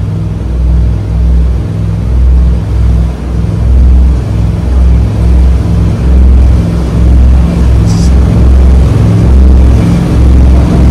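Twin LS V8 inboard engines of a motor yacht running under increasing throttle, their rpm climbing slowly as the boat accelerates. The deep engine drone rises and falls in loudness about once a second. There is a brief click near the end.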